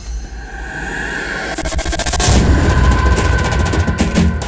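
Action-film background score: a held high tone over a low rumble that swells louder in the second half. A short crackling rush of sound comes about halfway through.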